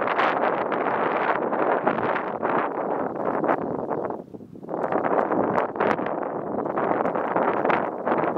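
Wind buffeting the camera's microphone in loud gusts, easing off briefly a little past halfway before picking up again.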